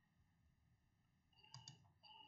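Near silence: room tone, with a few faint clicks near the end.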